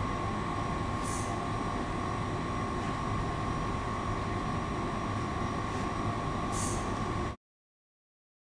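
Steady low room rumble with a thin, steady high-pitched hum over it and two faint brief hisses, cutting off suddenly shortly before the end.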